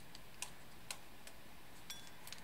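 A few faint, scattered clicks of a small servo and laser-cut wooden robot parts being handled.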